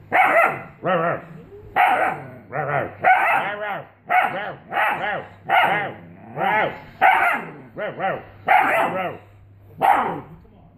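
Puppy barking over and over in high, yowling barks, about one or two a second, while worrying a towel: excited play barking.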